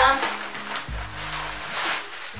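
Clear plastic garment packaging crinkling and rustling as a dress is pulled out of it, over background music with a low, regular beat.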